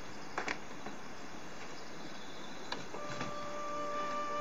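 Quiet rural ambience with faint insect chirring and a few soft clicks; about three seconds in, background music begins with long held notes.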